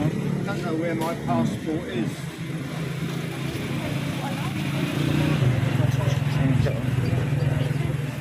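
A motor vehicle engine running steadily, a low drone that grows a little louder in the second half. A few quiet words are spoken in the first two seconds.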